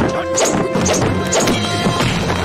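Sound-effect blade clashes from a staged sword fight: several sharp metal strikes, some with a brief ringing after them, over loud action music.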